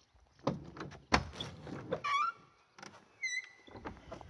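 Old wooden church door being opened by its iron ring handle: a sharp clunk about a second in, then the hinges give a short rising creak and a brief high squeak as it swings open.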